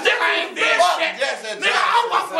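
Men's voices shouting and talking over each other, loud and overlapping so that no words come through clearly.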